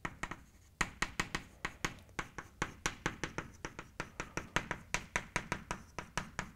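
Chalk writing on a blackboard: a quick, uneven run of sharp chalk taps and short scratchy strokes, several a second, starting just under a second in.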